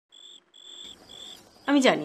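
A cricket chirping softly in short, even, high-pitched pulses about twice a second. A woman's voice comes in near the end.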